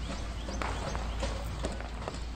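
Outdoor phone-recorded sound of trees full of locusts. A steady low rumble of wind on the microphone runs under a rustling hiss, with scattered irregular clicks.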